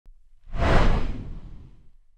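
Whoosh sound effect for an intro title animation: a single noisy swell that rises about half a second in and fades away over the next second, with a deep rumble beneath it.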